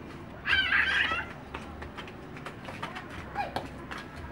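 A young child's high-pitched squeal about half a second in, lasting under a second and wavering in pitch, followed later by a brief, quieter falling call.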